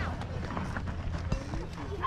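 Background chatter of spectators at a youth baseball game over a steady low rumble, with one sharp knock about one and a half seconds in.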